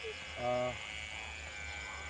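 Electric hair clippers buzzing steadily as they cut a child's hair, with a short hummed "mm" from a voice about half a second in.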